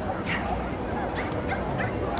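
A dog yipping a few times: short, high-pitched calls, one near the start and a quick cluster about a second in, over voices and outdoor background noise.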